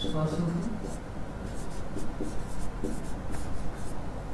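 Marker writing on a whiteboard: a run of short, separate strokes as Devanagari letters are drawn, with a man's voice briefly near the start.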